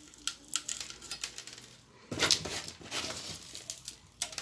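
Gritty potting soil with small gravel being handled and sprinkled into a plant pot: scattered small clicks of grit landing, then a louder rustling scrape about two seconds in.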